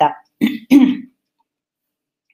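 A woman clearing her throat in two short bursts, about half a second apart.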